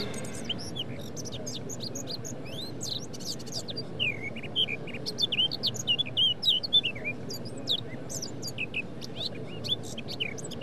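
Many small birds chirping and tweeting, short overlapping calls that come thickest in the middle, over a faint steady hiss.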